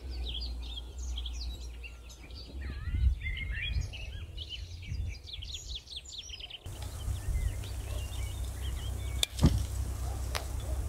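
Small songbirds chirping and singing: many quick high chirps, busiest in the first two-thirds and sparser after, over a steady low rumble. Two sharp clicks come near the end.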